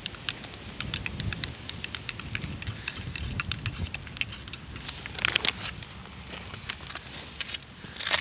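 Crackly rustling and light pattering as hot chocolate mix is tipped from its packet into a mug, with a denser burst of clicks about five seconds in.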